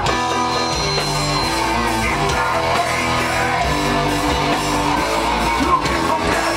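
Live rock band playing a guitar-led passage: electric guitars chugging a repeating riff over bass and drums, loud and steady throughout.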